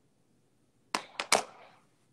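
Three quick, sharp clicks or knocks close to the microphone about a second in, the last trailing off into a brief rustle: a phone being handled.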